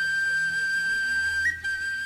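Background music: a flute-like wind instrument holding one long high note over a low steady drone, with a small upward step near the end.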